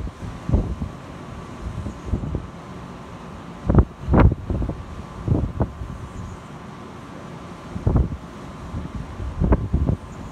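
Wind buffeting the microphone in uneven gusts, heard as irregular low rumbling bumps over a steady background hiss; the strongest gust comes about four seconds in.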